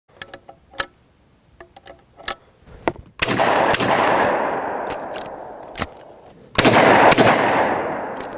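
A string of sharp clicks as 12-gauge shells are loaded into a Hatfield over-and-under shotgun. Then come two shotgun shots about three and a half seconds apart, each followed by a long rolling echo that fades over a couple of seconds.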